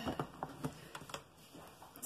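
Spatula stirring thick hot-process soap in a ceramic slow-cooker crock: a few soft, irregular clicks and taps against the crock.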